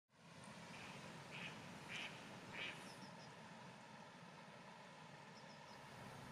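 Faint outdoor ambience with four short animal calls about half a second apart near the start, and two brief runs of quick, high bird chirps.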